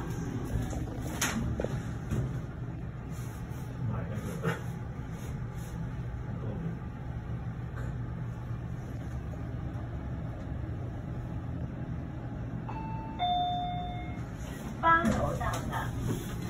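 Fujitec elevator car travelling upward with a steady low hum from the ride. About 13 seconds in, a two-tone arrival chime sounds, signalling that the car has reached the selected floor.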